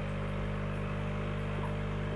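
Steady low hum made of several even tones under a faint hiss, typical of an aquarium air pump running the tank's sponge filters.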